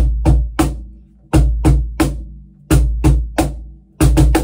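Pearl Music Genre Primero cajon (meranti face plate, fixed snare wires, rear bass port) played by hand in a repeating three-stroke beat: two deep bass strokes then a sharper snare slap, the group coming round about every second and a half. The player says afterwards that it was not quite right and that he missed it.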